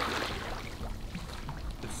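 Quiet backyard swimming pool: a low steady rumble with faint splashing and trickling water.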